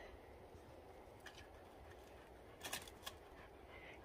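Near silence outdoors, broken by a few faint crunches of steps on dry forest litter: one about a second in and two more near the end.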